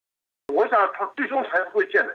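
A voice speaking Chinese over a telephone line, thin and narrow in sound, starting with a click about half a second in after a moment of silence.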